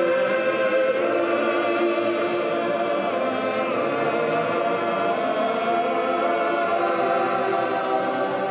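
Choir singing slow liturgical chant in long held notes.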